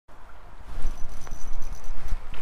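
Wind and handling noise on a GoPro microphone, with a thin, steady high whine from about a second in as a spinning reel is cranked to bring in a hooked trout.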